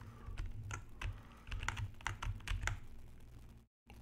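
Irregular light clicking of a computer keyboard and mouse, a dozen or so sharp clicks spaced unevenly.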